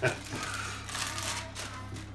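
A short burst of laughter at the start, then a soft rustling of a plastic sheet being pulled away from a baking tray, lasting about a second and a half.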